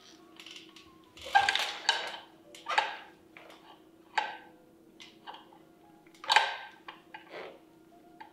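Knocks and creaks from a mountain bike rocking in a wooden two-by-four manual trainer as the rider pulls the front wheel up: a handful of short knocks with lighter ticks between them, over a faint steady hum.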